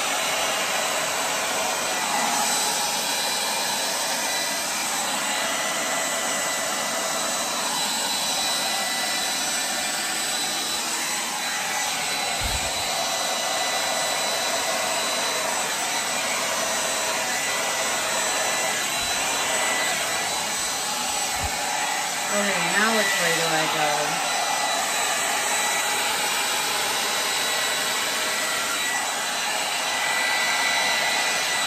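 Handheld hair dryer running steadily, a constant high whine over the rush of air, as it blows wet acrylic paint across a canvas. A short wavering vocal sound rises over it about two-thirds of the way through.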